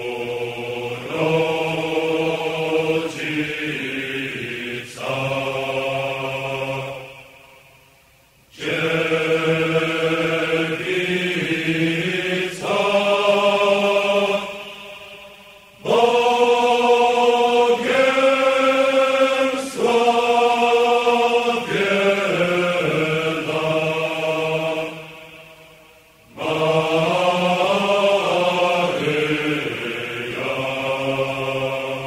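Slow chant-like vocal music. Long held sung notes come in phrases, and the sound fades and pauses briefly three times before each new phrase starts.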